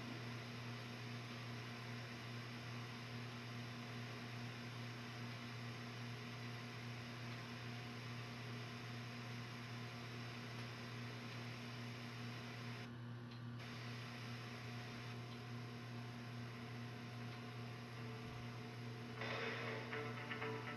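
Steady low hum and hiss from the playback of a VHS tape over a silent stretch. The hiss dips briefly about two-thirds of the way through, and music starts about a second before the end.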